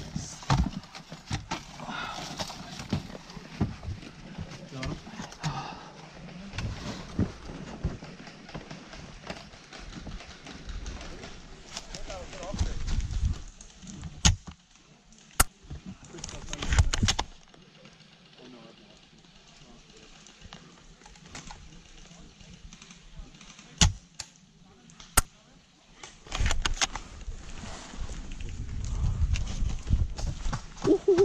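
Airsoft player's movement noise with faint muffled voices, then about six sharp single airsoft gun shots spread through the second half, separated by quieter gaps.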